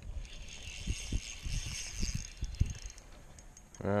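Spinning reel being cranked to retrieve a lure, a fine whirr of its gears for about two and a half seconds, with a few dull knocks.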